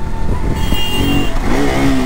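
Single-cylinder engine of a KTM RC 200 sport motorcycle running steadily as it is ridden slowly through traffic. A short high-pitched tone sounds about a second in.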